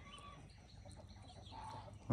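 Faint chicken calls over a quiet background: two short, soft notes, one at the start and one near the end.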